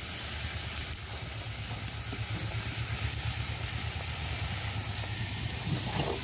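Food sizzling in a wok over a wood-fired clay stove, with a steady low rumble underneath. A spatula scrapes in the wok near the end.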